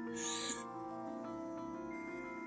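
Soft background music of slow, held notes that change pitch every second or so, with a brief hiss just after the start.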